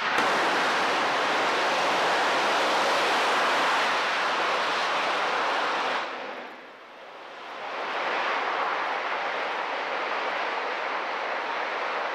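Starship upper stage's single Raptor rocket engine during a static fire: a steady, loud rushing noise. It dips briefly about six seconds in, then carries on slightly quieter.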